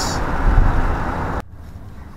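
Camper van driving at road speed: steady engine and tyre rumble, heavy in the low end. About one and a half seconds in it drops suddenly to a quieter in-cab road hum.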